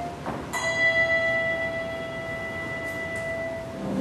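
Handbells rung in a church: a chord is struck about half a second in, and its notes ring on and slowly fade over about three seconds.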